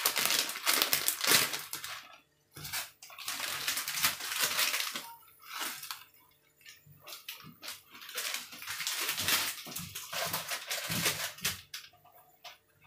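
Water bubbling at the boil in a steel pot on a gas stove, with the crinkle of a plastic instant-noodle packet as the noodle block is tipped in. The hissing, bubbling sound comes and goes, dropping out briefly about two seconds in and again around six seconds.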